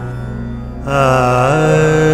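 A steady drone with a singer's voice entering about a second in on a long held 'aah' in classical raga style. The note bends up once and is held again.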